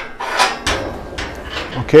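Galvanised steel lift-and-slide sheep-yard gate being swung shut and latched into position: several metallic knocks and rattles.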